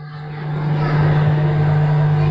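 A motor vehicle's steady engine hum with rushing noise, swelling over the first second and then holding steady.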